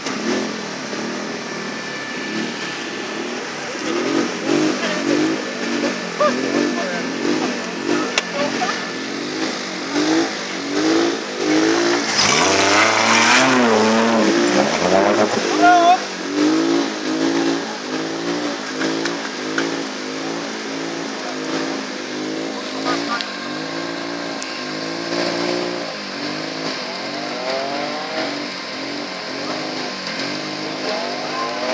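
Off-road buggy's engine revving over and over, rising and falling, as it sits bogged down in deep mud and water with its wheels churning. The loudest stretch, with a noisy rush of spray, comes about twelve to fifteen seconds in.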